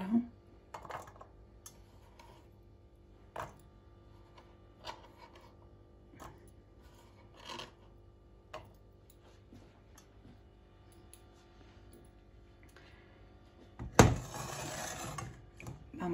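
Chopped garlic tipped into a non-stick wok of olive oil, then faint scattered clicks about once a second as it sits in the oil that is only starting to heat. Near the end comes a sharp knock, the loudest sound, followed by about a second and a half of rustling noise.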